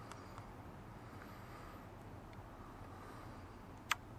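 Low, steady background noise with a few faint ticks and one sharp click just before the end.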